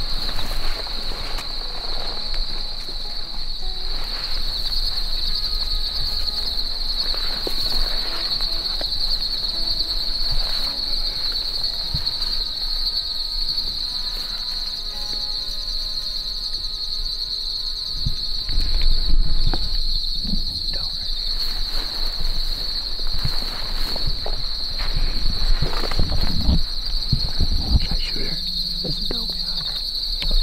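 Crickets and other field insects trilling in a steady, high chorus. A few low thumps and rustles come about two-thirds of the way in and again near the end.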